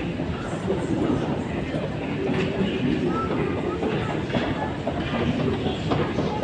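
Steady rumble and clatter of a running metro escalator, heard while riding down on its moving steps.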